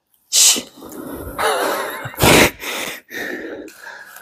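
A person out of breath, breathing hard: a sharp breath about a third of a second in, a voiced sigh, then a loud forceful exhale just after two seconds.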